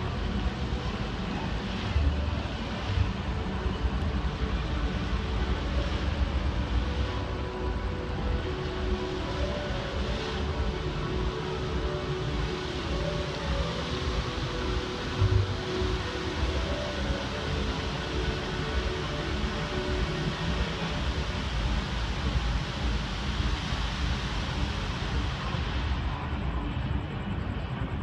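Music from the Bellagio fountain show's loudspeakers, faint under the hiss of the fountain's water jets and a heavy, uneven low rumble.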